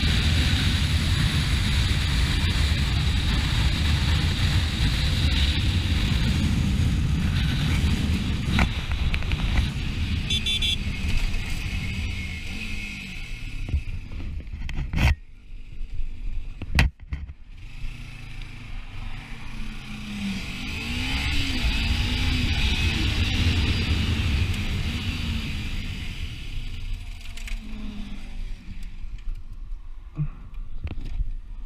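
Onboard sound of a sport motorcycle at road speed: steady wind rush over the engine. About 15 s in there is a sharp knock and the sound drops as the bike slows, with a second crack soon after. Later the engine pitch rises and falls.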